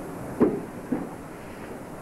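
Two short thumps about half a second apart, the first louder, from men grappling and striking each other in a martial-arts drill on training mats.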